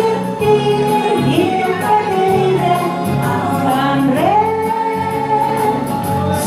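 An older woman singing into a handheld microphone over backing music. She holds long notes and slides up into one about four seconds in, over a steady bass line.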